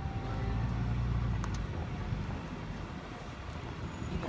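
Low, steady rumble of a vehicle's engine and tyres heard from inside the cab while driving on.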